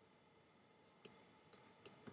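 Near silence broken by three faint, sharp clicks in the second half, a pen tapping on a graphics tablet while a word is handwritten.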